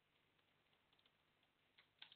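Near silence, with a few faint computer keyboard clicks from typing.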